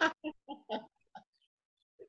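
A man laughing in several short, breathy bursts over a Zoom call, dying away after about a second.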